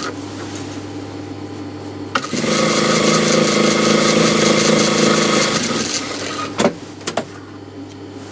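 Industrial sewing machine: its motor hums at rest, then the machine stitches a seam in one steady run of about three and a half seconds before slowing to a stop. A couple of sharp clicks follow near the end.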